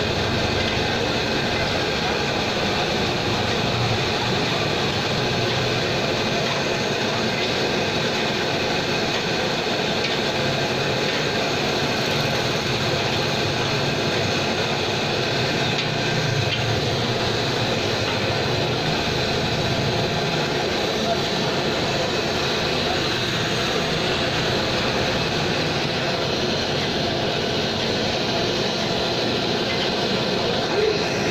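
A large wok of nasi goreng being stir-fried over a burner: a steady rushing noise of flame and sizzling, with the metal spatula scraping and tossing the rice.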